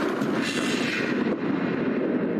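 Film soundtrack: a steady rushing noise, even and unbroken, with no speech or music.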